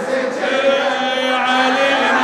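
Male voices chanting a latmiyya, a Shia mourning chant, holding one long steady note from about half a second in.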